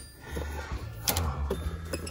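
Background music with a steady low bass line, and one sharp click about halfway through.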